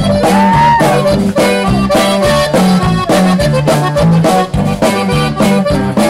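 Conjunto band playing a polka: a diatonic button accordion carries the melody over electric bass and drums, which keep a steady oom-pah beat with the bass alternating between two notes.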